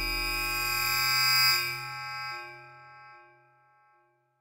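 Sustained electronic chord of many layered steady tones at the opening of an electronic music track. It swells to its loudest about a second and a half in, then fades away to near silence.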